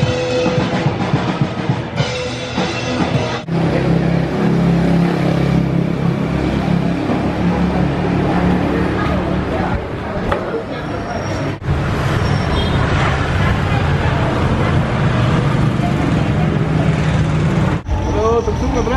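Busy night-street ambience: music playing from bars, people talking, and motor traffic, heard as a few short shots that change abruptly.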